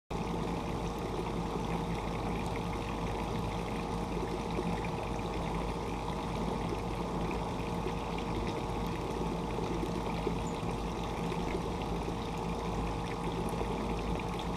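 A steady rushing noise with an even, constant hum under it, unchanging throughout.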